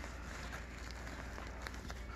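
Faint rustling of sequined fabric being handled, with a few tiny ticks, over a steady low hum.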